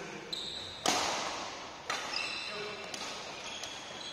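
Badminton rally: two sharp racket strikes on the shuttlecock, about a second in and again near two seconds, each ringing on in a reverberant hall. Short high squeaks of court shoes on the floor come between the strikes.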